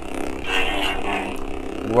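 Sabertrio Skylar lightsaber's soundboard humming steadily, with a swing sound swelling and fading about half a second in as the lit hilt is swung.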